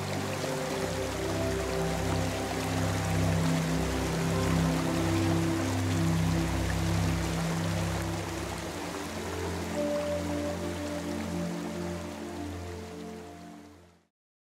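Background music of slow, held chords, with a steady hiss of running water under it, fading out over the last couple of seconds.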